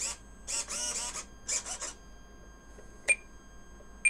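Soft handling rustles, then one short, sharp electronic beep about three seconds in, the loudest sound, as from a Spektrum DX9 radio transmitter just after binding. A faint steady high electronic whine runs underneath.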